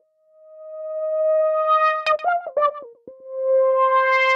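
Nord Lead 4 synthesizer playing through its 'Ladder M' transistor ladder filter emulation. A held note fades in and grows steadily brighter as the filter opens. A quick run of short notes follows, then a second, slightly lower held note that swells and brightens again.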